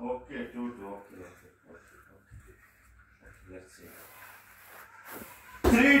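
Only voices: faint talk and laughter fading out in the first second, a quiet stretch with a faint voice, then a loud spoken score count near the end.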